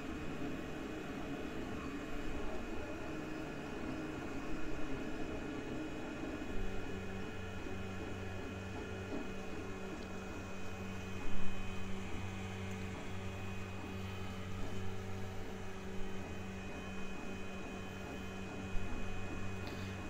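Geeetech Giantarm D200 3D printer printing: a steady hum and whir of its fans and stepper motors with a thin high whine, and a lower steady hum joining about six seconds in as the print head moves on. The print is running normally again after recovering from a filament run-out.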